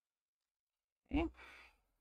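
A woman's short sigh about a second in: a brief voiced note that drops in pitch, trailing off into a breathy exhale.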